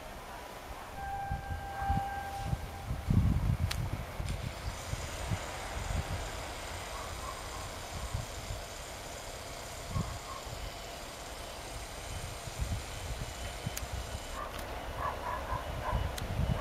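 Two-car diesel multiple unit pulling out of the station and moving away, an uneven low rumble that fades with distance. A brief steady tone sounds about a second in.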